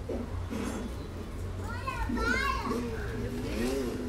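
Young children's voices exclaiming and chattering without clear words as they play, loudest in the second half, over a steady low hum.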